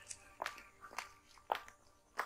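Footsteps of one person walking away, about two steps a second.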